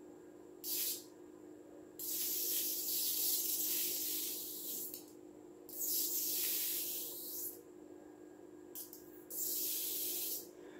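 Sparks from a small kacher-driven Tesla coil jumping from its tin-can top to a grounded screwdriver tip, a hiss that comes and goes in bursts. There is a short burst under a second in, then two long ones of about three and two seconds, then two shorter ones near the end.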